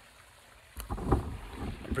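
Handling rumble from the camera's microphone as the camera is picked up and turned around, starting about three-quarters of a second in and loudest just after a second in.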